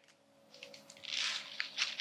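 Fresh spinach leaves rustling and crinkling as a handful is dropped and pressed into a bowl by hand. The rustle starts about half a second in, with a few short crisp crackles near the end.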